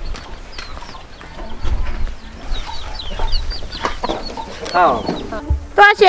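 Domestic chickens clucking in a yard, with a quick run of short high chirps about halfway through.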